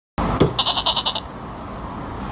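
A cleaver chop on a wooden chopping block, followed at once by a short, quavering goat-like bleat that pulses about ten times a second.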